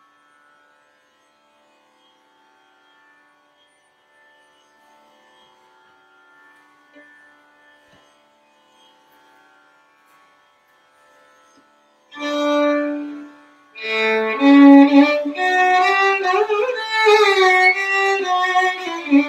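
A faint steady drone, then about twelve seconds in a violin enters loudly on a long held note and moves into a Hindustani classical melody with sliding glides between notes.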